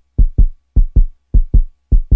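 Heartbeat sound effect: loud, low double thumps in lub-dub pairs, repeating evenly a little under two pairs a second, like a quick pulse.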